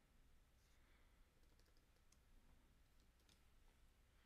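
Near silence: room tone with a few faint, scattered clicks from computer mouse and keys.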